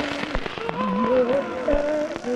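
A man humming a slow, wavering, eerie tune with his mouth closed, in imitation of a creepy horror-film score. A few faint clicks fall among the humming.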